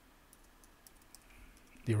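Faint, scattered computer keyboard and mouse clicks, a few separate taps. A man's voice starts near the end.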